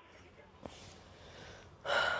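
A pause of faint room tone with one soft click, then a person's quick intake of breath near the end, just before speaking.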